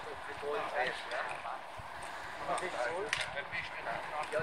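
Indistinct chatter of several men's voices, with no clear words, and a brief sharp click about three seconds in.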